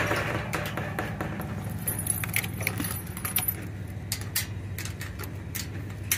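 Rusty metal gate chain clinking and rattling as it is handled, a quick run of light metallic clicks, over the steady low hum of a vehicle engine idling.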